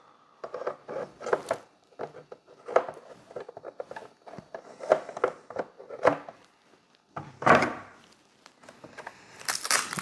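Scattered light plastic clicks, knocks and rustling as a monitor stand arm is slid into the slots on the back of a monitor. There are a couple of louder rustles, one about seven and a half seconds in and one near the end.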